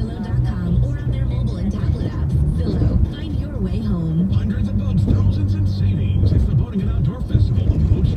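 Car radio playing music with a singing voice, heard inside a moving car over constant low road and engine rumble.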